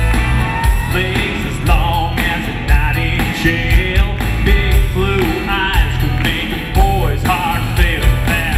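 Live country song: a man singing into a microphone over his own acoustic guitar and a backing track with a steady beat.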